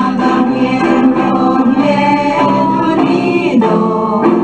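A Chavacano song: voices singing together over a musical backing.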